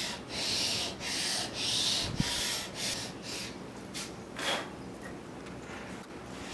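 Steel drawknife blade rubbed back and forth flat on 250-grit sandpaper over a granite slab, a rasping stroke about twice a second, the strokes growing lighter after about three seconds. This is the back of the blade being flattened and its rust ground off.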